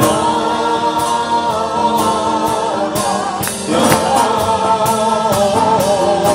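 A man singing long, wavering held notes into a microphone over a Spanish guitar, with sharp strokes about twice a second.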